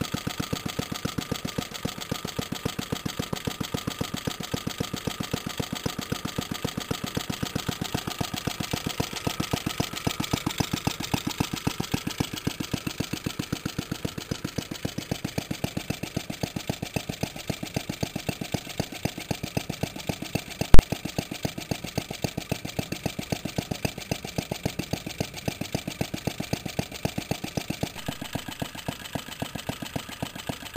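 Early-1960s Suffolk Iron Foundry 75G14 small single-cylinder engine ticking over steadily in a fast, even beat. There is no knock, now that its loose flywheel has been tightened. A single sharp click, the loudest sound, comes about two-thirds of the way through.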